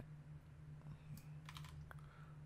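A few faint clicks of computer keyboard keys being pressed while code is selected and moved in an editor, over a steady low hum.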